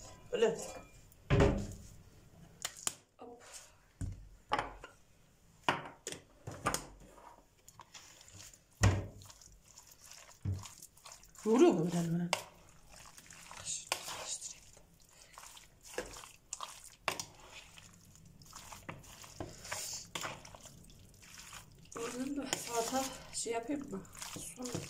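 Chunks of raw meat being mixed by hand with spices in a bowl: soft wet squishing with scattered knocks and clicks against the bowl.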